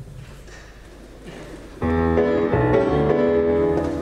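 Piano starting an accompaniment: after a near-silent opening, loud sustained chords begin suddenly just under two seconds in and ring on, beginning to fade near the end.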